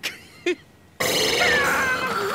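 An animated character's voice lets out a sudden loud, strained vocal cry through gritted teeth about a second in, sliding down in pitch, after two short clicks.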